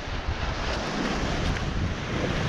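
Wind buffeting the microphone over the steady wash of ocean surf on a rocky shore.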